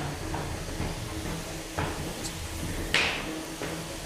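Sharp impacts of 3 lb combat robots hitting each other: three strikes, one at the start, one just before two seconds in, and the loudest about three seconds in, over a steady low hum.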